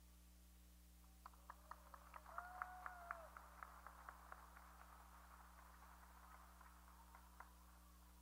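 Near silence: room tone with a run of faint, quick clicks or taps, about four or five a second, loudest a couple of seconds in and fading toward the end, with a brief faint tone about two and a half seconds in.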